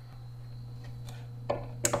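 A steady low hum, with two short clicks near the end as the multimeter's test probes are handled.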